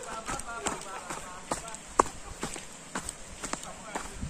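Footsteps on a rocky dirt trail, an uneven walking rhythm of short scuffs and knocks on loose stones, with one sharper knock about halfway through.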